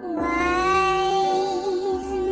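A singing voice holds one long, steady note in a song, with a slight waver near the end.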